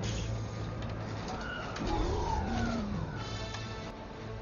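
Film soundtrack mix: orchestral score over a steady low starship engine hum, with several gliding, sweeping tones in the middle.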